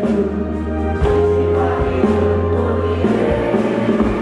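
Live band music with singing: a male lead vocal with backing singers over keyboards and a deep bass line whose notes change about once a second.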